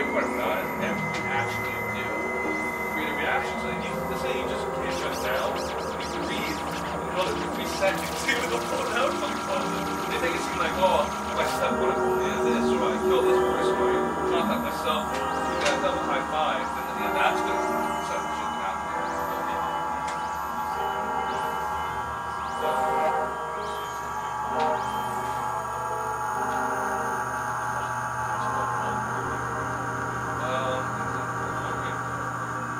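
Experimental electronic drone music: layered, held synthesizer tones with scattered clicks and crackles, busiest in the middle.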